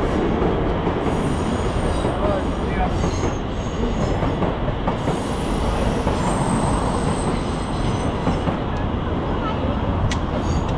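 Train running on the adjacent tracks with a steady rumble, its wheels squealing now and then in thin high tones.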